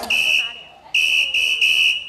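A whistle blown in a break in the dance music: one short blast, a brief pause, then three quick blasts in a row, all at the same high pitch.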